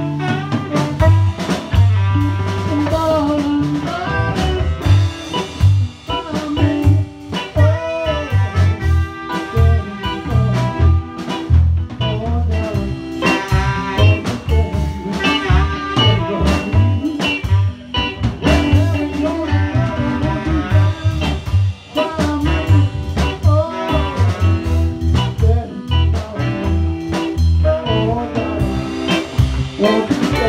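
Live band playing: electric guitar, bass guitar, drum kit and saxophone, with a man singing into a microphone over a steady drum beat.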